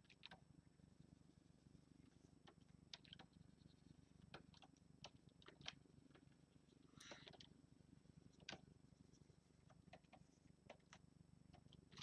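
Near silence: a faint steady low hum with scattered faint clicks.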